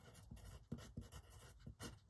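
Pencil writing on paper: a series of faint, short scratching strokes as a word is written out.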